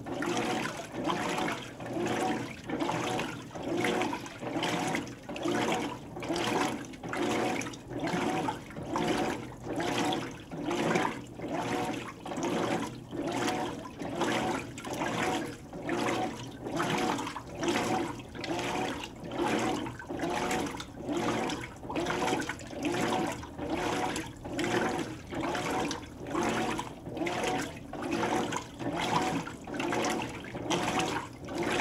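Hotpoint HTW240ASKWS top-load washer in its wash agitation: water and clothes sloshing rhythmically as the agitator swings back and forth, a little over one surge a second.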